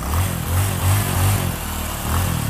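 Motorcycle engine running with a low, uneven throb that swells and dips.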